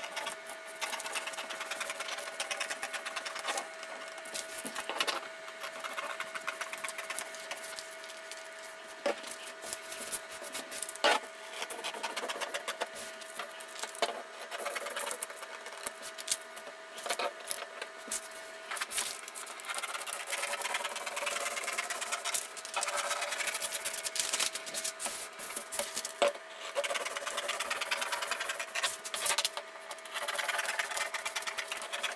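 Scissors cutting through brown pattern paper: irregular snips of the blades with the paper rustling and crinkling as it is handled. A faint steady hum sits underneath and stops about two-thirds of the way through.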